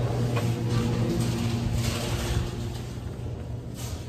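A steady low hum with a few fainter steady tones over a haze of room noise. It drops a little in level about two and a half seconds in.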